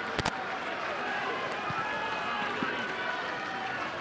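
Footballers' voices on the pitch during a goal celebration: overlapping shouting and talk, with two quick sharp smacks just after the start.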